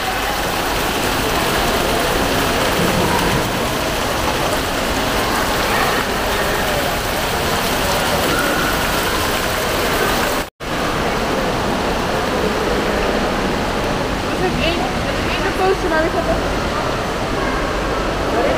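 Fountain jets splashing steadily into a pool, with a background murmur of people's voices. A split-second dropout comes just past halfway; after it the splashing is less prominent and the voices stand out more.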